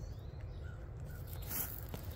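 Low outdoor background rumble with a couple of faint, short bird calls about two-thirds of a second in.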